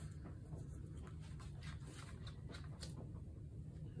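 Faint scattered light ticks and scratches from small plastic paint cups and a stirring stick being handled, over a low steady hum.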